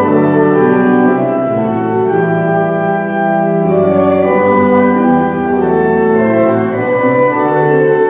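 Organ playing a hymn in slow, sustained chords that change every second or so.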